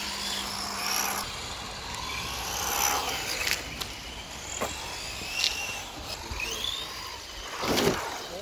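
Electric motors of 1/10-scale Tamiya TT-01/TT-02 RC touring cars whining, rising and falling in pitch as the cars speed up and slow down, with a few sharp clicks. A short loud rush of noise comes near the end.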